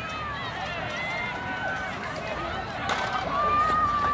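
Track-meet spectators shouting and cheering during a hurdles race, several voices overlapping. One long drawn-out yell starts in the last second as the cheering grows louder.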